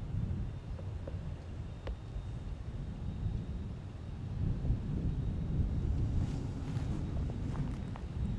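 Wind buffeting the microphone outdoors: a steady low rumble that swells somewhat in the second half, with one faint click about two seconds in.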